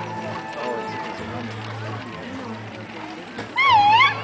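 Horses cantering on a dirt arena, their hoofbeats mixed with background sound and a low steady hum. Near the end, a person's loud wavering vocal call rises over it.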